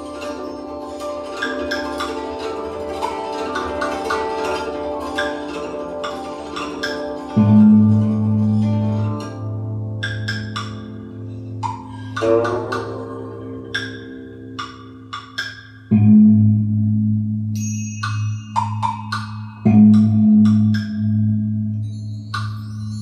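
Instrumental music: quick struck, ringing notes over held chords. A deep bass note comes in about seven seconds in and again twice later.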